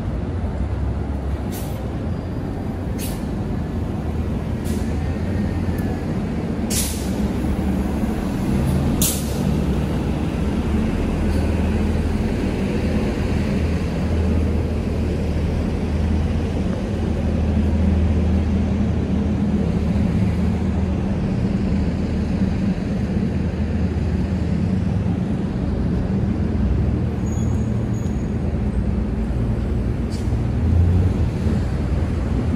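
Street traffic: a low, steady drone of bus and car engines running. Several short, sharp hisses come in the first ten seconds, the loudest about seven and nine seconds in, typical of a city bus's air brakes.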